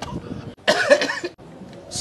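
A man's short, throaty vocal outburst lasting under a second, starting about two-thirds of a second in, with a fainter burst at the very start.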